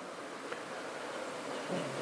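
Faint steady room tone of a lecture hall picked up through the lectern microphone, an even low hiss, with a faint voice sound just before the end.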